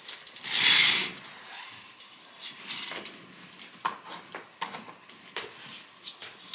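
A loud rustling swish about half a second in, then a scattered series of small clicks and taps, the sounds of someone moving around and handling things in a small room.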